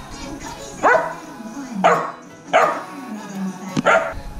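Yellow Labrador puppy barking four times, each bark short and falling in pitch, over background music.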